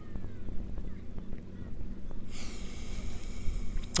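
A long sniff through the nose at a whisky glass, nosing the dram, starting a little after two seconds in and lasting nearly two seconds. A steady low hum runs underneath, with a few faint bird chirps in the first second.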